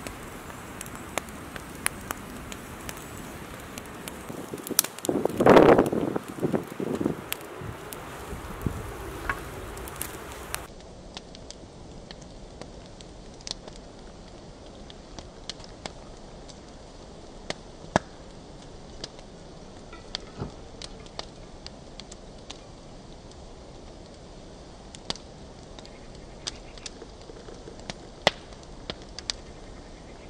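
Wood campfire crackling under a hanging camping kettle, sharp pops over a low hiss, with a louder noise lasting about two seconds around five seconds in. After an abrupt change about ten seconds in, a quieter stretch of a thin stream of hot water poured from the kettle onto a drip-bag coffee filter in a steel mug, with occasional small ticks.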